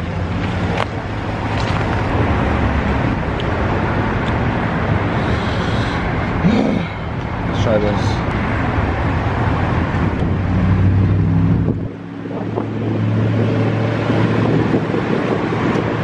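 Road traffic and idling car engines: a steady low engine hum under continuous traffic noise. The deepest part of the hum drops away about twelve seconds in.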